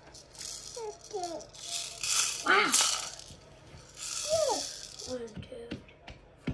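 Bursts of rustling as patches are handled and pressed onto a wall, three times, with short wordless vocal sounds in between.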